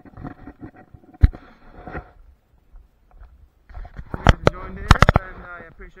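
A man talking, partly indistinct, with several sharp knocks and rubs from a body-worn camera jostled against clothing as he walks. There is one knock about a second in and a cluster of louder knocks near the end.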